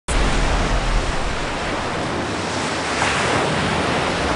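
Turbulent white water rushing, a steady dense noise with a deep rumble underneath.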